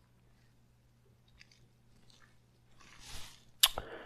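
Near silence with a faint steady low hum for most of it; about three seconds in, a man's soft intake of breath, then a sharp mouth click.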